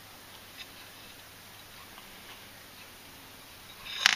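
Faint handling noise: a few light ticks over quiet room tone, ending in a brief louder scuff.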